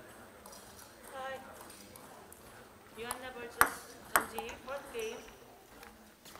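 Short stretches of people's voices with two sharp clicks about half a second apart midway, the first the loudest sound.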